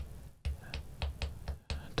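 A small tactile pushbutton on a breadboard clicking as it is pressed over and over in quick succession, about five or six clicks. Each press steps a thermostat's set temperature up one degree.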